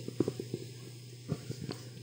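A handheld microphone picks up handling noise, a few soft knocks and rustles in the first second and a half, over a steady low electrical hum.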